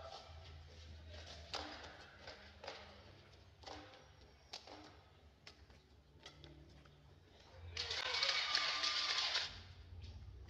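Badminton rally: sharp racket strikes on the shuttlecock about once a second. Near the end, about two seconds of loud crowd cheering and shouting as the point is won.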